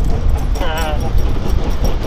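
Steady low rumble of wind buffeting the microphone, with a short wavering voice-like sound about half a second in and small clicks from surf gear being handled at the car boot.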